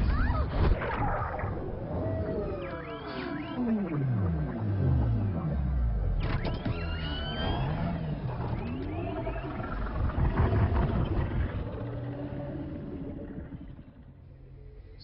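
Film sound effects of a small submersible under attack underwater: a heavy impact right at the start, then deep rumble under long groans and cries that slide down and up in pitch, fading near the end.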